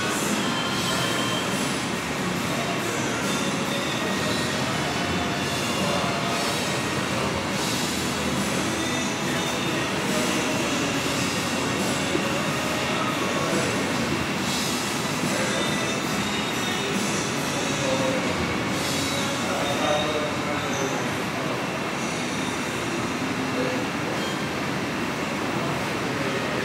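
Steady, dense room noise inside a restaurant, with faint clatter and scattered short squeaky tones over it.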